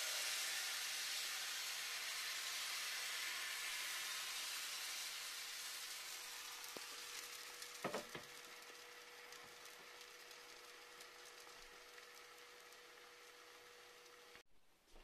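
Blini batter sizzling in a hot nonstick frying pan, loudest just after the batter is poured and fading steadily as the thin pancake sets. A brief clatter of knocks about eight seconds in.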